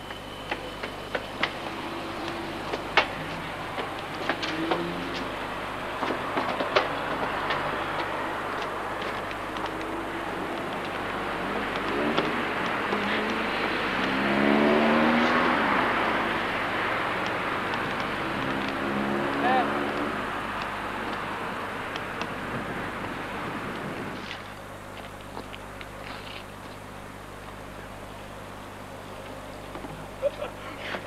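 A passing motor vehicle: a broad rush that swells to its loudest about halfway through and then fades away, with faint voices in the middle and scattered clicks. The sound drops suddenly to a quieter background well before the end.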